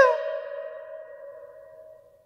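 The echo of a high sung note ringing on in a church's reverberant hall after the voice stops, one pure tone fading away over about two seconds.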